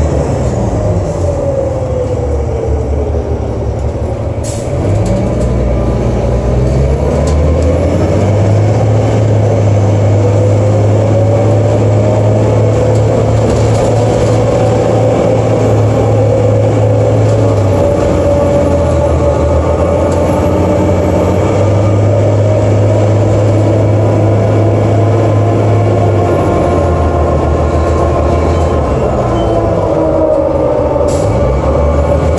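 Cummins ISL diesel engine and Allison B400 automatic transmission of a New Flyer D40LF bus, heard from inside the cabin while under way, with a torque converter that never locks up. The whine falls over the first few seconds, then about five seconds in the engine picks up and the whine rises and holds as the bus drives on.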